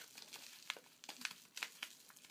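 Faint, irregular crinkling and crackling of a strip of brown paper being wound tightly in a spiral around a bubble-wrapped wand.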